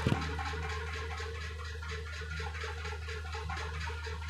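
A single brief knock of the recording camera or phone being handled as it is reached for, followed by a steady low electrical hum and room noise.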